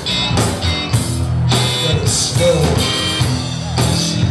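Live rock music from a two-piece band: a drum kit keeping a steady beat under a strong bass line from foot bass pedals, with guitar and keyboard parts on top.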